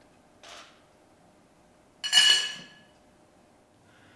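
A man's single sharp, high sob about two seconds in, preceded by a faint breath.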